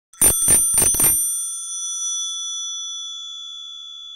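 A small metal bell struck four times in quick succession, then ringing on with a clear high tone that slowly fades.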